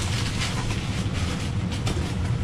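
Packing paper crumpling and rustling as it is pulled from a cardboard box, then a few sharp cardboard knocks as the box flaps are handled near the end, over a steady low rumble.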